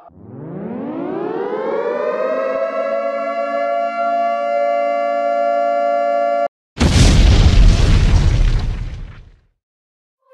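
Wind-up air-raid siren spinning up, rising in pitch over about two seconds and then holding steady, cut off suddenly about six and a half seconds in. A moment later a loud explosion goes off, with a deep rumble that fades away over about two and a half seconds.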